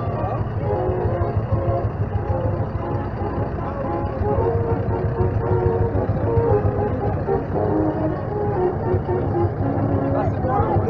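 Kubota M8540 tractor's diesel engine running steadily at low speed as it tows a parade float past, with people's voices over it.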